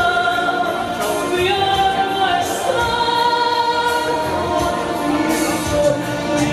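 A woman singing into a handheld microphone, holding long notes, over a musical accompaniment.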